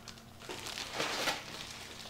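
Plastic bubble wrap crinkling and rustling as it is pulled out of a cardboard box, with a few sharper crinkles about half a second and a second in.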